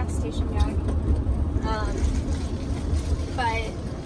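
Steady low road and engine drone inside the cabin of a moving van, with short vocal sounds twice.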